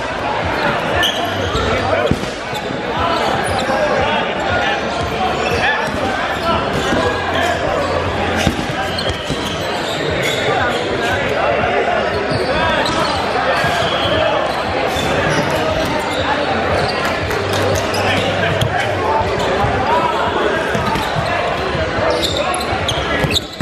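Dodgeball game in a reverberant gym: rubber dodgeballs bouncing and smacking on the hardwood floor and off players in frequent sharp knocks, over continuous overlapping shouting and chatter from players and spectators.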